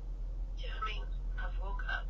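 A short stretch of indistinct speech over the low, steady rumble inside a moving car.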